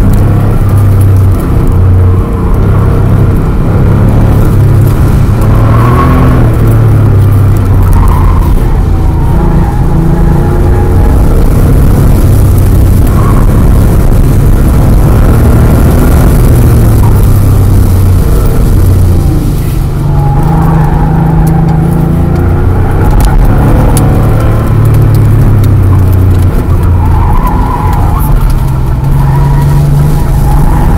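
1988 Porsche Carrera 3.2's air-cooled flat-six engine working hard on an autocross run, heard loud from inside the cabin, its pitch rising and falling again and again as the throttle is worked through the cones.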